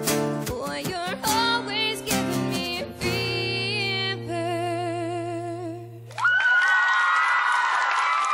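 A young woman singing a pop song live with acoustic guitar accompaniment, closing on a long held note with vibrato that stops about six seconds in. The studio audience then breaks into loud cheering.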